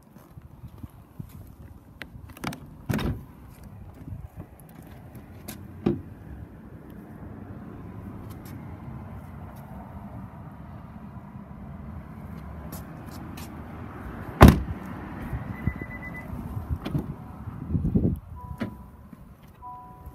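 Car door of a Honda e being opened and the cabin entered: several clunks and knocks, then one loud door slam about two-thirds of the way through. Near the end come handling bumps and a few short electronic beeps.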